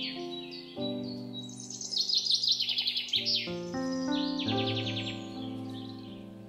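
Background music of sustained chords that change every second or so, with birdsong chirps and rapid trills layered over it, loudest about two seconds in.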